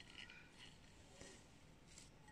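Near silence: room tone, with a faint tick a little past the middle.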